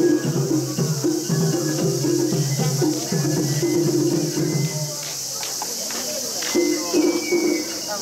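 Mikoshi bearers chanting in rhythmic unison, a regular two-part call repeating several times a second, over a steady high-pitched hiss. The chant stops for about a second and a half past the middle, with a few sharp clicks, then starts again.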